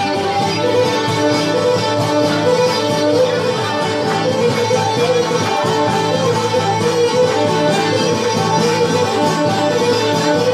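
Greek folk dance music, a bowed fiddle over plucked string instruments, playing steadily without a break.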